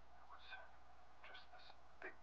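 Near silence with faint whispering, twice, over a low steady hum.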